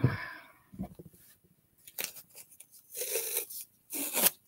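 Masking tape being pulled off its roll: a few faint rustles, then a longer pull of about half a second about three seconds in and another at the end.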